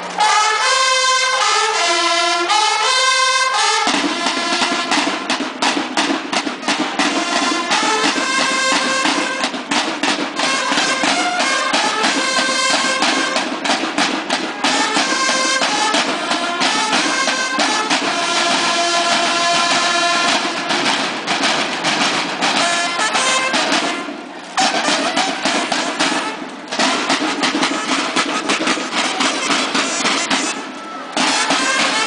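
Banda de guerra of bugles and snare drums playing a march: the bugles play a call alone at first, then the snare drums come in with them about four seconds in and they play on together, with two short breaks near the end.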